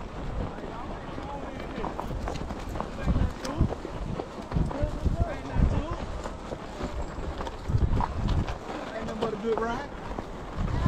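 Horse hooves walking downhill on a dirt trail, heard as irregular low thuds, with other riders' voices in the background.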